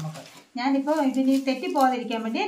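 A woman speaking, after a brief pause; no other sound stands out over her voice.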